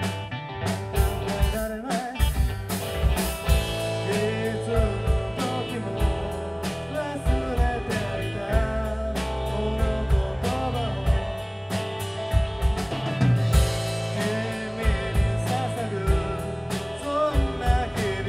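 Live band playing a song: electric guitar, keyboard, bass and drums, with drum hits in a steady beat. A singing voice comes in about four seconds in.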